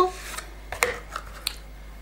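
Small cosmetic packaging being handled while the lip mask tube is taken out: a brief rustle, then a few light separate clicks and taps.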